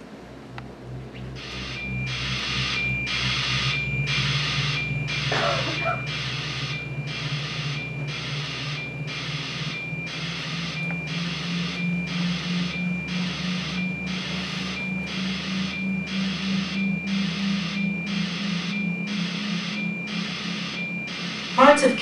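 Film soundtrack played through a room's speakers: an electronic pulse repeating evenly about one and a half times a second, over a low drone that slowly rises in pitch.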